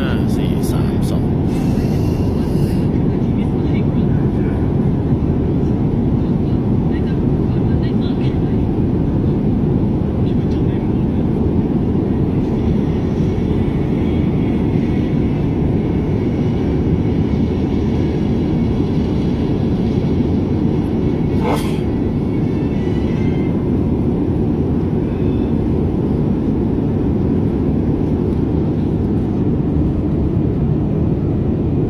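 A steady low rumbling noise runs throughout at an even level, with one sharp click about twenty-one seconds in.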